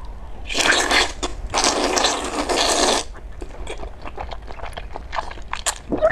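Wide starch noodles coated in chili-oil sauce being slurped into the mouth: a short slurp, then a longer one of about a second and a half. After that come wet chewing and mouth clicks.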